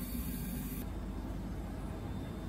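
Steady low rumble with a hiss of background noise, with no distinct knocks or cuts; the upper hiss thins out about a second in.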